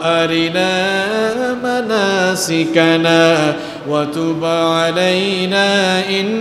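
A man's voice chanting a melodic Quranic recitation in long, held phrases with ornamented turns, dipping briefly about four seconds in.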